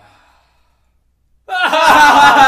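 Near silence, then about one and a half seconds in two men start laughing loudly.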